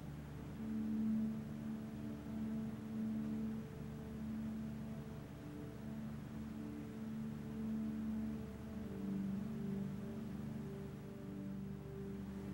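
Soft ambient background music of slow, long held low notes that change pitch every second or two.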